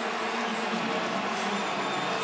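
Large stadium crowd cheering a touchdown, a steady wash of noise at an even level, with faint held tones running underneath.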